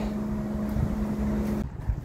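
Self-service car wash pressure washer running with a steady hum over a low rumble as the car is rinsed. It cuts off suddenly about a second and a half in, when the rinse is finished.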